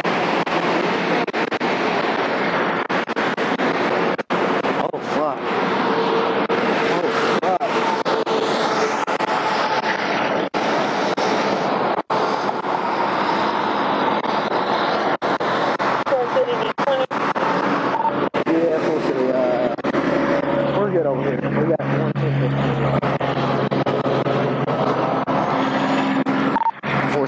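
Muffled, indistinct voices over a steady rushing noise, with the sound cutting out briefly several times.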